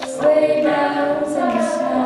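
Mixed-voice high-school a cappella group singing held chords, with a female lead voice on top. It briefly dips at the start and swells back in about a quarter second later.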